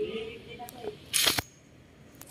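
A single handgun shot about a second in, heard as one short sharp crack.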